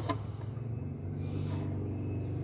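Steady low background hum of distant traffic, with faint light handling of small plastic parts.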